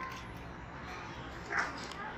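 Indoor playground background of children's chatter, with one short high-pitched squeal from a child about one and a half seconds in.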